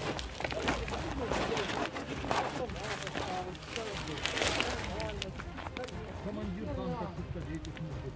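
Indistinct, quiet men's talk, with scattered clicks and rustling of handling noise from the phone close to the clothing.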